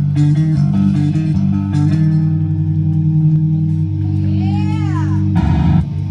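Live heavy metal band's distorted electric guitars and bass holding a low ringing chord as the song ends. Sweeping squeals or whoops rise and fall over it, and a short final chord hit comes just before the end.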